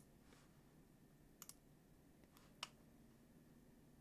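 Near silence with a few faint computer mouse clicks, the clearest about a second and a half in and again about a second later.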